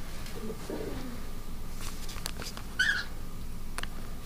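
Cockatiel giving a single short chirp about three seconds in. Before it there is a soft, low sound around the first second and a few faint clicks.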